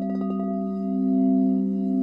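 Crystal singing bowls ringing in a sustained, humming tone with several overtones, swelling a little about halfway through.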